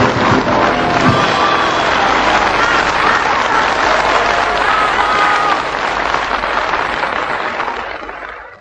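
Audience applauding at the end of a live song, over the last of the band's closing chord in the first second; the applause fades out toward the end.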